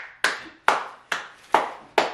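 One person clapping hands in a slow, steady beat: about five even claps, a little over two a second.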